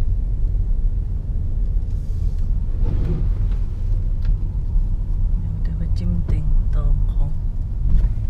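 Steady low rumble of a car driving slowly, engine and tyre noise heard from inside the cabin. Brief voices are heard about three seconds in and again near the end.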